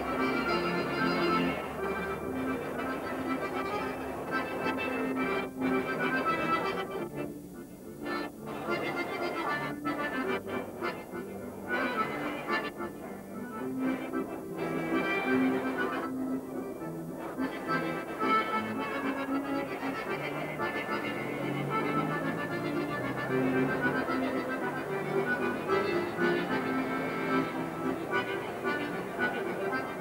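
Live violin and accordion playing a tune together, with sustained melodic notes that thin out briefly a few times.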